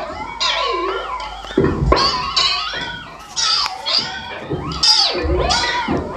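Experimental live noise music: warbling, gliding pitched sounds that bend up and down like animal calls, with deep thuds about two seconds and five seconds in.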